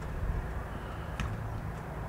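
Twin piston engines of a Cessna 404 Titan heard from a distance, a steady low drone over wind and outdoor noise, with one short click a little past halfway.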